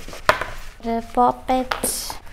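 A single sharp plastic clack as the lid of a hinged plastic case is handled, then a woman's voice speaking briefly.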